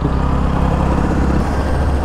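Royal Enfield Bullet 350's single-cylinder engine running steadily as the motorcycle moves off, heard from the rider's seat.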